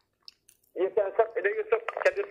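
A man laughing over a telephone line, his voice thin and tinny through the phone's speaker, in short rapid pulses that start after a brief near-silent pause.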